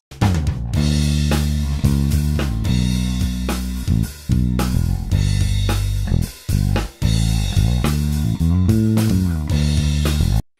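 Multitrack playback of a bass guitar line with a drum kit heard through a kick-drum mic and overhead mics. The bass plays a moving line of short notes over steady kick and cymbal hits, before any spectral shaping is applied to it.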